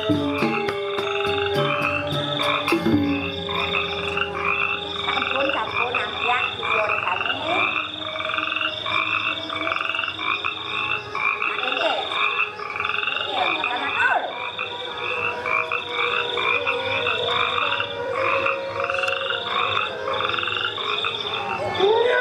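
A loud chorus of frogs croaking in a quick, evenly repeating pattern. Gamelan music with struck metal notes stops about three seconds in, and a few short gliding cries sound in the middle.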